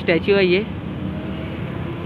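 A man's voice says a couple of words, then steady motor traffic noise with a faint, even engine hum.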